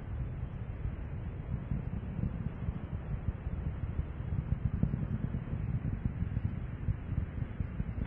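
Steady low rumble of the space shuttle's rocket engines and solid rocket boosters during ascent, flickering in loudness but otherwise even.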